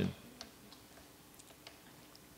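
Quiet room tone with a few faint, scattered ticks, unevenly spaced; the tail of a man's voice fades out at the very start.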